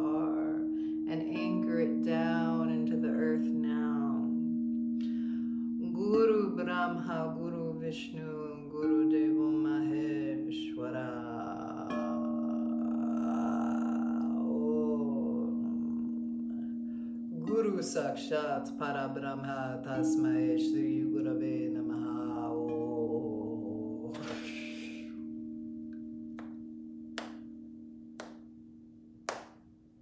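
Wordless vocal toning over the sustained tones of crystal singing bowls played with a mallet, the bowl notes holding steady and shifting pitch every few seconds. The singing stops about 24 seconds in and the bowl tones fade, with a few light knocks near the end.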